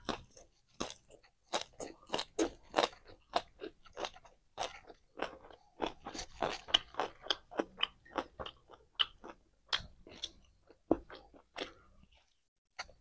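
Close-miked chewing and crunching of a hand-eaten meal of fried pork, rice and greens: irregular sharp crunches and wet mouth clicks, several a second.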